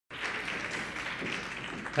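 Audience applause in an auditorium, a steady patter of many hands clapping that fades near the end.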